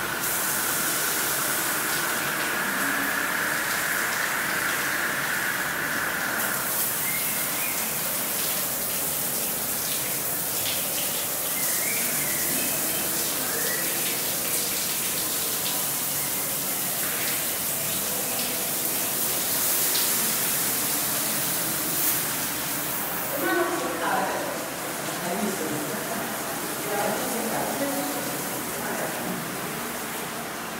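Ceiling-mounted rain shower pouring water in a tiled shower room: a steady rushing hiss. A steady high tone sits over it for about the first six seconds.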